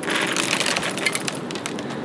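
Handful of dry alphabet pasta dropped from above, the small hard pieces pattering in a dense run of light clicks onto an open paper book and the ground, thinning out near the end.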